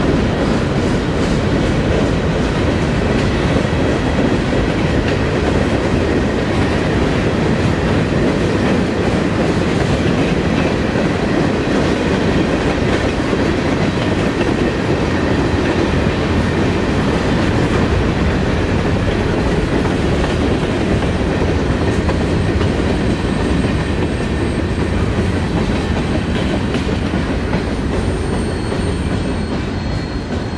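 A mixed freight train of boxcars and covered hoppers rolling past at close range: a loud, steady rumble and rattle of steel wheels on rail, with faint high whining tones over it. The sound begins to fade near the end as the last cars pull away.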